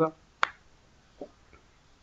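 A single sharp click about half a second in, then a much fainter tick about a second later, against near quiet.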